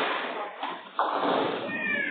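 Nine-pin bowling balls rolling down the lanes, a steady loud noise, with a sudden knock about a second in and a short rising high-pitched squeal near the end.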